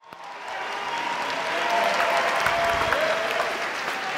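Audience applauding. The applause rises out of silence over the first second, then holds steady.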